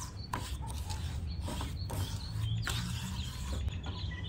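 Wooden spatula scraping and stirring granulated sugar around a nonstick frying pan as it melts for caramel, a gritty scrape about once a second over a low steady hum.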